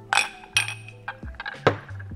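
Glass clinking: the shot glass knocks inside the tall Jägerbomb glass twice as it is drained, then the glass is set down on the bar top with a sharper knock near the end. Background chillhop music plays under it.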